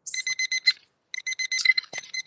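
Electronic timer alarm beeping: rapid short high-pitched beeps, about eight a second, in three bursts under a second long each, signalling that the member's speaking time has run out.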